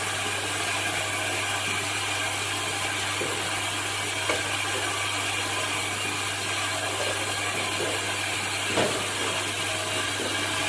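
Automatic double-side self-adhesive bottle labeling machine running: a steady mechanical whir with a constant low hum from its motors and conveyor, and a light knock about four seconds in and another near the end.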